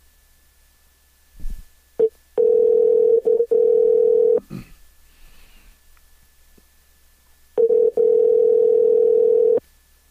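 Telephone ringback tone of an outgoing call ringing unanswered: two rings, each about two seconds long, with a pause of a few seconds between them. A short blip comes just before the first ring.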